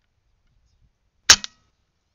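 A single shot from a Diana Stormrider PCP air rifle: one sharp crack a little past halfway, with a fainter click a split second after it. The shot hits the rabbit it was aimed at.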